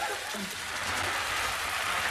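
Studio audience laughing as a steady crowd wash, easing slightly at first and then holding.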